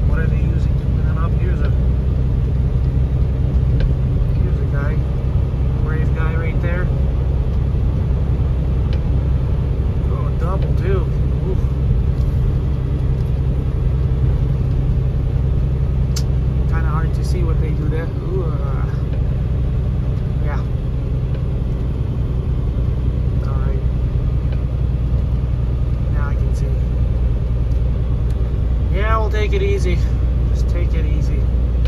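Semi-truck's diesel engine and road noise heard inside the cab, a steady low drone while cruising on a snow-covered highway.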